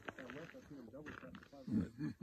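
Quiet, indistinct talk of men's voices, with a louder voice sound near the end.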